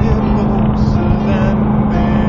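Chevrolet SSR's V8 running at a steady cruise with road and tyre rumble, heard from inside the cab, with a song playing over it.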